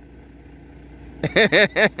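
A man laughing: a quick run of short bursts beginning a little over a second in, over a low steady background hum.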